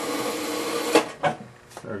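Antique Zeno chewing gum machine's coin-operated vending mechanism running with a steady whir, which ends in a sharp click about a second in, followed by a few faint clicks as the gum is pushed out. The mechanism seems to catch on gum that is too thin, which the owner guesses jammed it.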